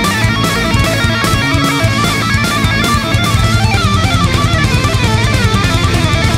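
Rock music: an electric guitar lead line with bent notes over bass and a steady drum-kit beat.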